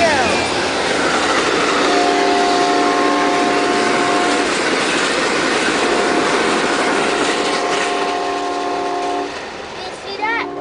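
Amtrak passenger train passing close at speed, a loud continuous rush of wheels and cars on the rails. Its locomotive horn sounds two long steady chords, the first about two seconds in and the second about six seconds in.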